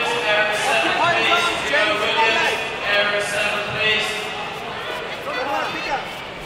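Several people shouting over one another in a sports hall, with long, drawn-out shouted calls that fade near the end: coaches and spectators urging on kickboxers in a bout.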